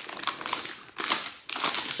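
Plastic KitKat wrappers crinkling as they are picked up and handled, in several irregular rustles.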